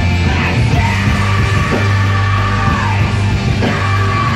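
Live heavy metal band playing: electric guitars over long, held low bass notes, with the vocalist singing over the band.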